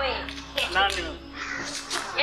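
A person shouting in loud, high-pitched, harsh bursts of voice.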